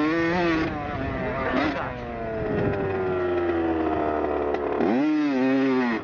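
Dirt bike engine under the rider as he works the throttle on a trail. The revs rise briefly at the start, then fall in one long drop as the throttle is rolled off, and climb again sharply near the end.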